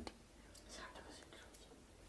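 Near silence: a pause in a man's talk, with only a faint, brief sound just under a second in.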